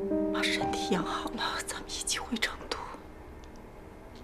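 Soft background music with held notes, joined in the first three seconds by breathy, whisper-like vocal sounds.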